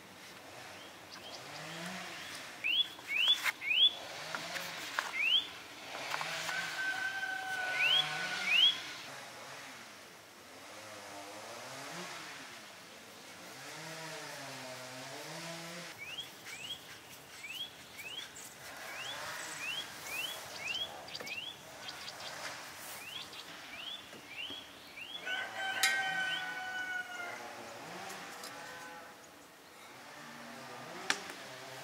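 Rural outdoor ambience: a bird calls in runs of short rising chirps, with a louder pitched call twice. About halfway through comes a low, wavering animal call from farm livestock.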